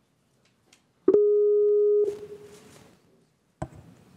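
A single steady telephone line tone, about a second long, starting abruptly about a second in and then fading, as a phone call to a remote speaker is being connected; a sharp click follows near the end.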